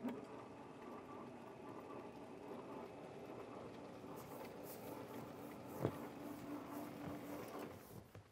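Motorized sliding chalkboard panels travelling along their tracks: a steady mechanical hum and rumble that starts abruptly and cuts off just before the end, with a single knock about six seconds in.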